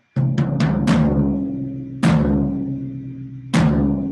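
Floor tom struck with a drumstick: four quick hits, then two single strokes about a second and a half apart, each ringing out with a long, low, sustained tone. It is a tuning test after the bottom head was loosened an eighth of a turn per rod to bring its pitch closer to the top head.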